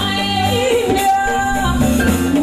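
A woman singing long, wavering held notes into a microphone over a live band with a steady bass line.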